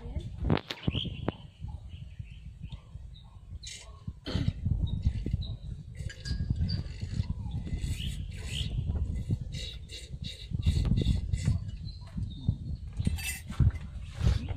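Small birds chirping in many short, quick high calls that grow busier from about four seconds in, over a low rumble from a moving handheld camera.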